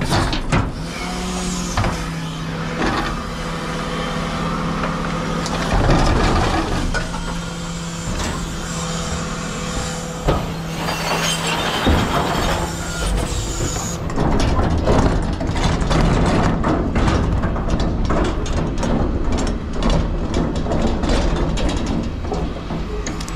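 Rear-loading refuse truck's bin lift tipping and lowering a large four-wheeled communal bin: a steady hydraulic hum with knocks, then a hiss. In the last several seconds the emptied bin's castors rattle over the pavement as it is wheeled away.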